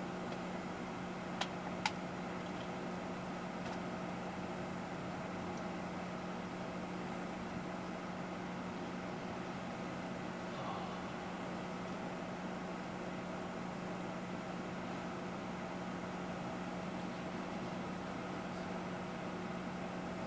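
Steady low machine hum that holds one pitch and does not change, with two faint clicks about a second and a half and two seconds in.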